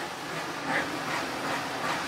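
Steady background rumble and hiss, with a faint voice or two in the middle.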